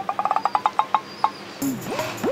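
A quick run of short, high bird-like chirps, about a dozen in the first second, followed near the end by a brief sliding tone.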